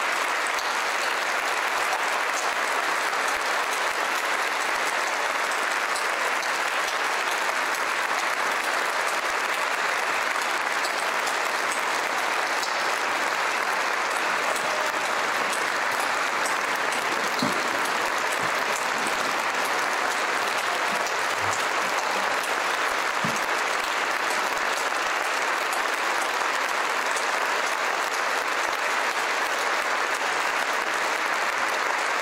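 Large audience applauding steadily and at length, a dense even clapping that holds its level throughout.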